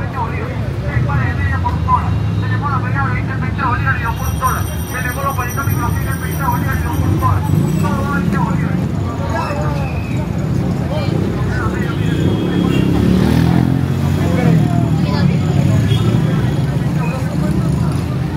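Busy city street: the low, steady rumble of a city bus and passing traffic, swelling in the second half, with snatches of passers-by talking in the first half.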